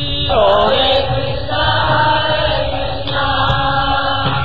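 Devotional chanting: a melodic mantra sung over musical accompaniment.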